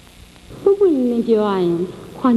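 A young woman's voice in a drawn-out, tearful phrase whose pitch falls steadily, starting about half a second in.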